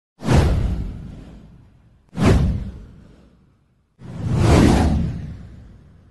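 Intro sound effect: three whooshes about two seconds apart. The first two hit sharply and fade away; the third swells up before fading.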